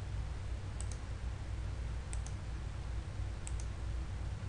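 A computer mouse clicking three times, about 1.3 seconds apart, each click a quick pair of ticks, over a steady low hum.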